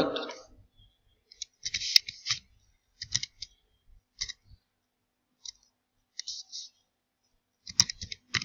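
Computer keyboard keys tapped one at a time, slowly typing a word, with short clicks spaced a second or so apart and silent gaps between them.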